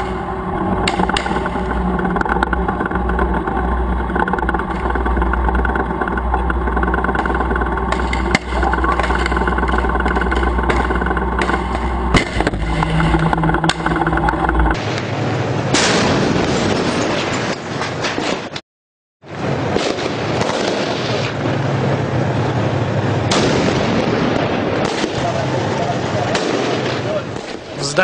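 Tank's diesel engine running steadily, with two sharp bangs. Partway through it cuts to rougher, noisier battle sound with scattered bangs, broken by a moment of silence.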